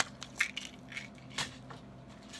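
Paper being handled and crinkled, giving about four short, sharp crackles, the loudest right at the start.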